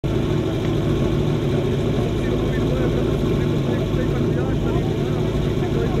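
Small engine running steadily at idle, typical of a team's portable fire pump waiting before the start of a fire-sport drill, with people's voices over it.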